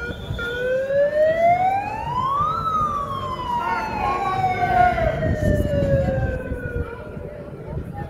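A siren winds up once, its pitch rising for about two seconds, then slowly falls away over the next four or five seconds. The voices and noise of a marching crowd run underneath.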